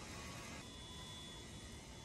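Faint, steady outdoor background hiss of city and construction-site ambience, with no distinct event. Its tone changes abruptly about half a second in.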